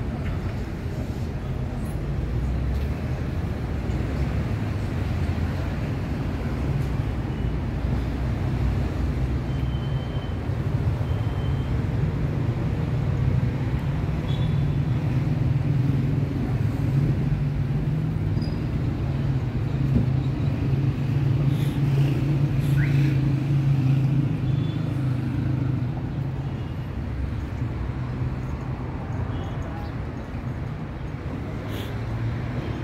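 City street ambience of road traffic running steadily alongside, with a vehicle engine growing louder through the middle and easing off near the end.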